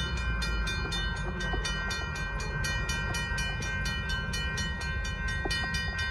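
Railroad grade-crossing warning bell ringing steadily at about four strokes a second, over a low rumble.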